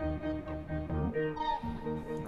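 Pitched-up sample loop playing back in FL Studio through a stack of Gross Beat effects with reverb just added: held, string-like notes over a low bass.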